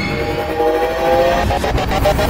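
Logo-sting sound effect: a swelling build-up with a slowly rising chord of held, horn-like tones over a low rumble, breaking into rapid ticking near the end.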